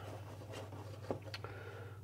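Faint rubbing and a few light clicks as a pan of salted, gently simmering water is swirled on a glass-topped hob, over a steady low hum.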